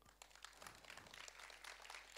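Faint, scattered audience applause: a steady patter of many light claps.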